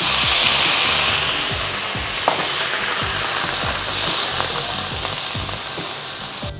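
Soju poured into a hot wok of onion and carrot sets off a loud sizzle right at the start that slowly dies down, with a spatula stirring the vegetables.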